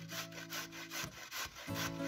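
Raw carrot rubbed up and down a stainless-steel box grater: quick, even rasping strokes, several a second.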